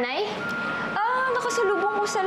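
A person's voice, drawn out and sliding up and down in pitch, over two steady high tones that come in about half a second in and hold.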